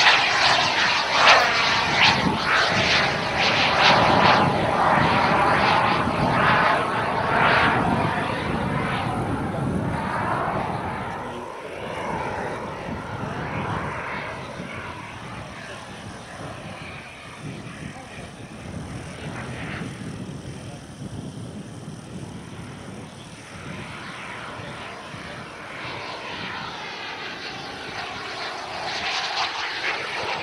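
Colomban Cri-Cri's twin JetCat P200 small turbojets in flight: loud for the first ten seconds or so with a sweeping whoosh as the aircraft passes, fading to a distant whine through the middle, then growing loud again near the end as it comes back round.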